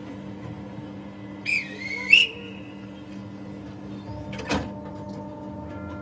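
A short squeaking scrape, then a single knock a couple of seconds later, as the paper figure is handled out of the wooden frame of a small paper theatre. Near the end several steady held tones begin to sound together.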